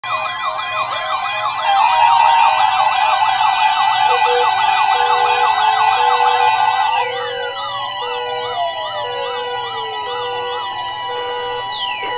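Many electronic siren sounds layered together, slow wails and fast yelps sweeping up and down over steady tones, with an on-off beep joining about four seconds in. It is the alarm-tone part of a mock weather warning-alarm test. About seven seconds in, the loudest layer stops and several sirens wind down in pitch while the others keep cycling.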